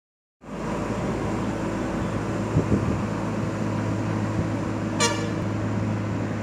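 Steady vehicle running noise with a low hum, a couple of light knocks just before the midpoint, and a short horn toot about five seconds in.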